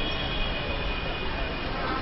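Steady machine-like background noise with a faint, high, steady whine through it.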